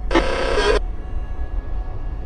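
A burst of harsh electronic glitch static, lasting under a second and stopping suddenly, over a low rumbling soundtrack drone.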